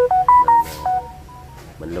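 A short electronic chime: a quick run of clean beeps at stepped pitches, some overlapping, lasting about a second and fading out.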